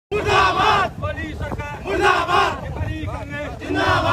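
A crowd of men shouting political slogans in unison. There are three loud group shouts about a second and a half apart, with quieter voices in between.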